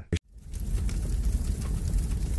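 Channel logo transition sound effect: a steady, rumbling noise that fades in after a short click and cuts off suddenly about three seconds later.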